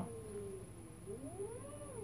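Nissan Leaf electric traction motor spinning unloaded under a replacement controller board, giving a faint whine that sags slightly, then rises and falls in pitch in the second half as the throttle changes, over a steady very high-pitched tone.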